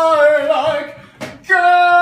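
A voice singing long held notes of a melody without clear words. It breaks off about a second in, with a brief click in the gap, and comes back on another held note.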